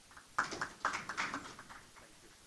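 Handling noises at a lectern picked up by its microphone: a quick run of taps and rustles starting about half a second in and dying away near the end.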